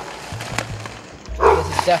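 A dog barking, with the loudest bark about a second and a half in.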